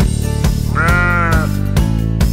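A single bleat sound effect, one wavering call about 0.7 s long starting a little under a second in, over an upbeat children's song backing with a steady beat and plucked strings.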